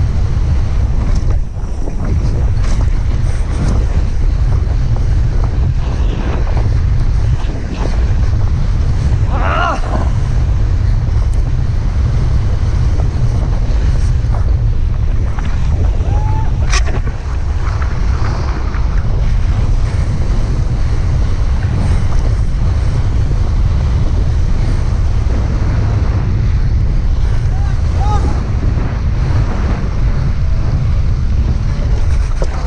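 Wind buffeting a helmet camera's microphone during a fast mountain-bike descent on snow, a loud steady rumble.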